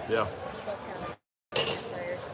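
Mostly speech: a man says "yeah" over a low background of other voices. The sound cuts out completely for about a third of a second, a little over a second in.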